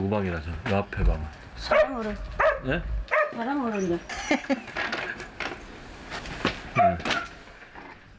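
Two women talking briefly, with a dog barking now and then in the background.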